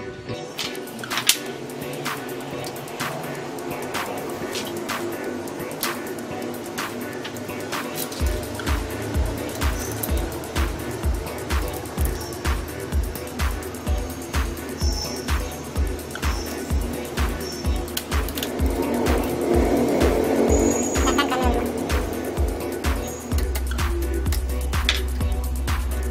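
Background music with a steady beat; a deep bass pulse about twice a second comes in about eight seconds in.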